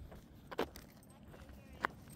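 Quiet outdoor background with two brief, faint clicks about a second and a quarter apart.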